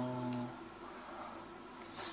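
A man's drawn-out 'um', held on one steady pitch, trailing off about half a second in, then quiet room tone.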